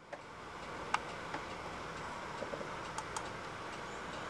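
Steady room hiss with four or five light, sharp clicks scattered through it, from a computer mouse being clicked.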